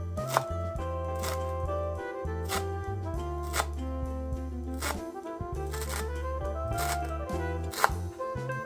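Instrumental background music: a steady bass line under a melody that moves in short steps. Sharp knocks come about once a second.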